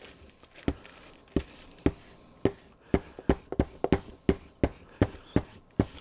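Hangar 9 sealing iron worked over laminating film on a foam hull: a string of short knocks and rubs, irregular at first and then quickening to about three a second.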